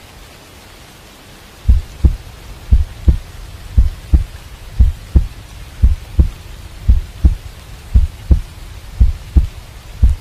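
Heartbeat sound effect: slow paired low thumps about once a second, starting a couple of seconds in, over a steady hiss of rain.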